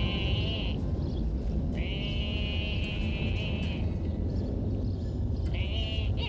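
An animal's high, quavering, bleat-like calls: three of them, a short one at the start, a longer one of about two seconds in the middle, and another beginning near the end, over a steady low background rumble.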